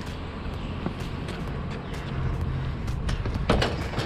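White wire shelving clinking and rattling as it is carried and set down on top of a load of scrap in a pickup bed, with a few sharper metal knocks near the end, over a steady low rumble.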